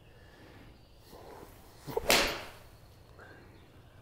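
A toe-weighted Edel 54° wedge strikes a golf ball off a hitting mat about two seconds in: a sharp crack of contact followed by a brief hiss.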